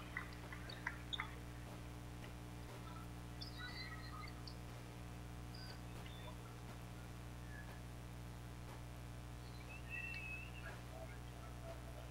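Faint, steady electrical hum on a broadcast microphone line, with a few faint scattered sounds from a basketball arena and a few small clicks in the first second or so.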